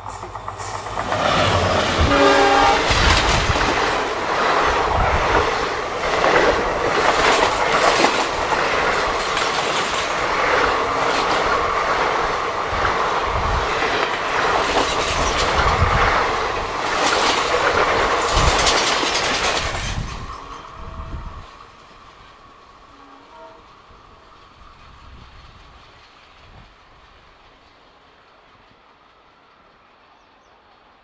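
An Indian Railways WDP4 EMD diesel locomotive and its long rake of passenger coaches passing at speed, with the wheels clattering over the rail joints. The horn sounds briefly about two seconds in. The sound drops away about twenty seconds in as the last coaches recede.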